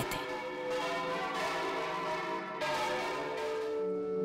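Large bronze bells of the Miguelete bell tower being swung full circle by hand, all ringing at once. Their overlapping tones hang on while new strikes come in every second or so.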